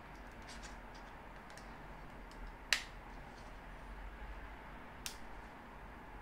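Clicks from a Canon EOS M50 mirrorless camera body as it is handled: a few faint clicks, then one sharp loud click a little before halfway and a smaller sharp click near the end.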